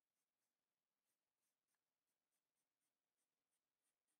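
Very faint scratching of a Sharpie felt-tip marker on paper, drawn in short repeated strokes about three a second.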